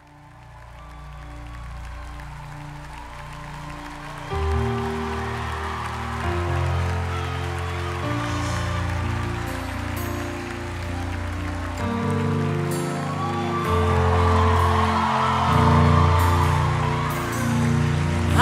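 Live gospel band's slow instrumental intro fading in: sustained held chords, with deeper bass notes coming in about four seconds in and the chords changing about twelve seconds in.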